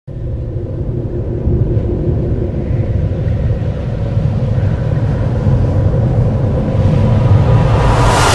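Dark, ominous rumbling drone of a horror-style intro sound bed, with faint sustained tones above it, slowly swelling louder.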